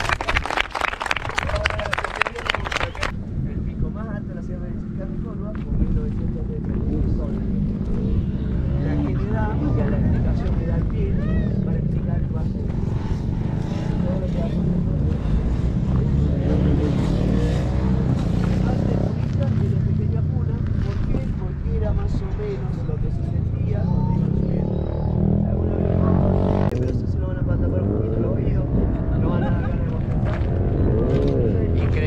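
A group of people clapping their hands for about three seconds, then scattered chatter of the group over a steady low rumble.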